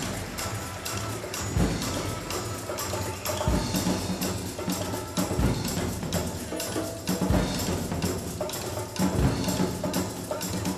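Instrumental orchestral introduction with bongos tapping a quick rhythm over a deep low beat that recurs about every two seconds.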